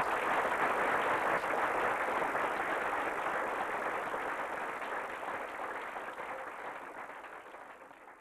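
Audience applauding: dense clapping that slowly dies away over several seconds.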